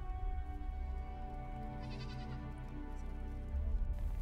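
Soft background music with steady sustained tones, and a single short bleat from a tethered farm animal about two seconds in.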